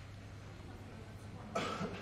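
A single cough, loud and short, about one and a half seconds in, over a faint steady hum.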